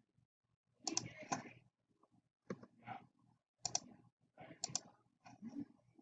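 Computer mouse clicking: a series of short, sharp clicks at irregular intervals, some in quick pairs.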